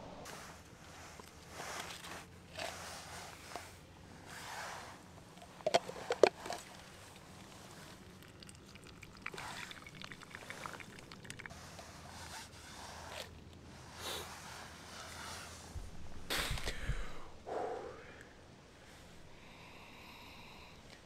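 Handling noise of camp coffee gear: scattered rustles and scrapes, a cluster of sharp clicks about six seconds in, and a low bump around sixteen seconds.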